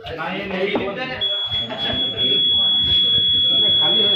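A long, steady, high-pitched electronic beep starts about a second in and holds on, over several people's voices. It is the sustained beep of an electronic voting machine signalling that a vote has been recorded.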